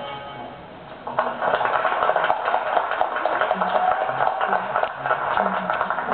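Recorded dance music ends with its last held chord fading out, and about a second in an audience breaks into steady applause, many hands clapping, with a few voices near the end.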